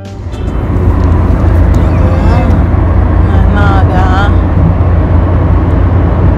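Loud, steady rumble of wind and road noise buffeting a phone's microphone inside a moving car, with a person's voice briefly twice, about two and four seconds in.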